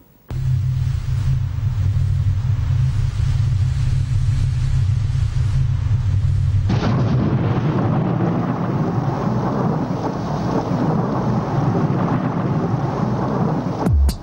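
Opening of a dark UK garage instrumental played back: a deep, steady bass tone, joined about seven seconds in by a loud, dense rushing noise layered over it.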